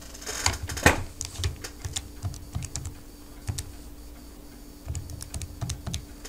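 Keys typed in an irregular run of short clicks as numbers are entered into a calculator, with a faint steady hum underneath.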